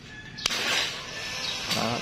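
Hitachi FDS 12DVC 12-volt cordless drill driver: a click about half a second in as the trigger is pulled, then the motor running with a rough whir. The battery is nearly flat.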